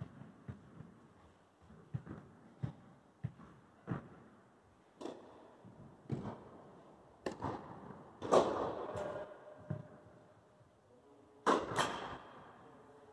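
Tennis ball bounces and players' footsteps in an indoor tennis hall: a run of soft knocks about half a second apart, then scattered knocks, a louder sound with a ringing echo about eight seconds in, and two sharp knocks near the end.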